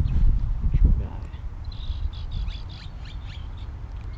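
Small birds chirping in the background: a string of short high chirps and quick falling notes through the middle. A low rumbling noise dominates the first second.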